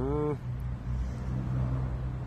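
A brief vocal sound at the very start, then a steady low hum like an engine running.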